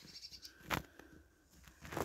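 Faint scattered rustles and small clicks, the loudest a brief crackle a little before the middle.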